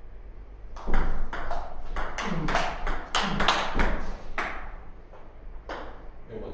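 Table tennis rally: the ball clicks off the rackets and bounces on the table in quick alternation, about four to five hits a second. The rally stops after about four seconds, and one more click comes near the end.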